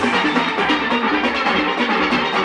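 Steel orchestra playing a panorama arrangement on steelpans, many pans ringing together over light percussion. Right at the start the deep bass beats drop away, leaving the higher pans.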